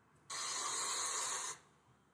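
A single burst of steady hiss, a little over a second long, that starts and stops abruptly.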